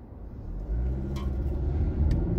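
Car engine and low road rumble heard from inside the cabin as the car pulls away from a standstill, growing louder from about half a second in as it accelerates.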